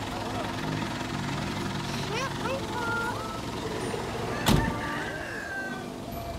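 Van engine idling steadily, with voices around it, and one sharp loud bang about four and a half seconds in.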